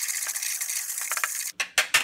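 A spoon stirring graham cracker crumbs and melted butter in a plastic mixing bowl, a steady scraping that stops suddenly about one and a half seconds in, followed by a few sharp clicks.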